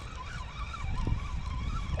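Spinning reel being cranked while a hooked striped bass is reeled in: a thin, wavering whine from the reel over a low rumble.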